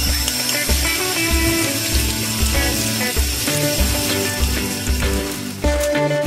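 Background music with a steady bass beat, over water running from a kitchen tap into a sink as white beans are rinsed in a strainer. The running water stops shortly before the end.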